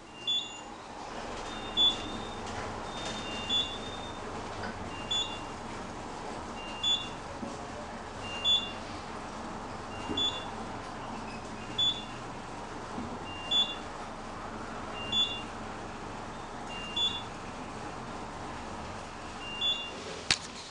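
Fujitec traction elevator car descending with a steady running hum, while a short, high two-note beep sounds about every second and a half to two seconds, about a dozen times: the floor-passing signal, one beep for each floor passed.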